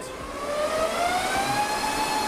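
HPE DL560 Gen10 rack server's cooling fans spinning up under the heat of a full all-core CPU render benchmark: a steady whine rising in pitch over the rushing air, levelling off near the end.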